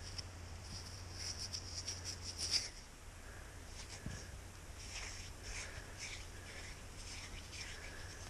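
Faint bird calls and chirps in the background, short high notes recurring every few seconds, with soft scratching in two spells as fingers rub dirt off a stone arrowhead point.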